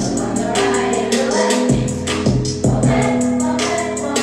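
A hard hip-hop beat built on a sample: a held, choir-like vocal sample over deep bass notes that drop out briefly and come back, with fast hi-hats ticking throughout.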